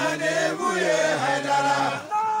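A group of voices chanting a devotional refrain together, singing long held notes that bend slightly in pitch.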